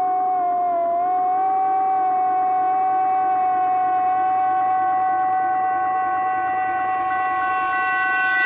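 A single long held musical note with rich overtones. It rises a little in pitch in the first second, then holds steady, and a higher tone joins near the end. It works as a drone opening the next song in the soundtrack.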